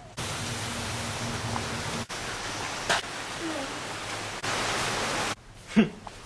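A loud, steady hiss that changes abruptly twice, with a brief sharp sound about halfway through, then a short voice sound falling in pitch near the end.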